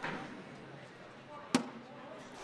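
A cornhole bag landing on the wooden board with a single sharp thud about one and a half seconds in, over low hall background noise.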